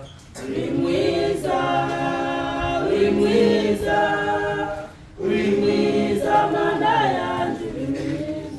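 A group of voices singing a hymn together without instruments, in long held phrases, with a short break about five seconds in.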